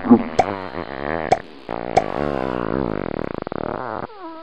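A person's voice making low, wavering buzzing noises, with a few sharp clicks, that break into a rapid flutter near the end.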